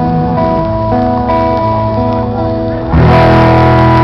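Live acoustic guitar with band playing the closing chords of a song, held notes changing every second or so. A louder chord strikes about three seconds in and rings on.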